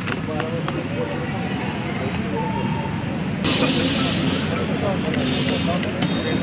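Indistinct chatter of a group of people talking over one another, with a steady hiss that comes in about three and a half seconds in.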